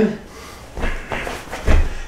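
Movement sounds of karate hand strikes: a short swish or rush of breath and cloth about a second in, then a low thud near the end from a bare foot on a wooden floor.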